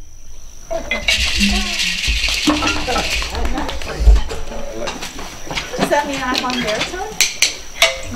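Several people chatting indistinctly among clattering knocks and clicks of wooden mallets and percussion being handled between pieces of a marimba rehearsal, with a brief hissing rattle about a second in and a louder knock about four seconds in.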